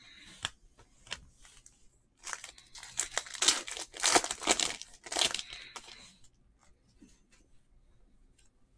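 Foil wrapper of a Panini NBA Hoops trading-card pack being torn open and crinkled, a dense crackling from about two seconds in to about five and a half seconds. Before it come a few light clicks.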